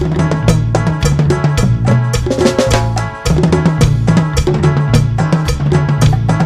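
Dance-band music from a medley of música de costumbre, driven by a busy drum kit (bass drum and snare) over a steady bass line and melody instruments. The beat drops out briefly about three seconds in, then comes back.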